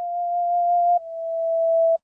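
A single held electronic tone, the last note of the song's outro, growing louder. About halfway it dips briefly and drops a little in pitch, then swells again and cuts off suddenly.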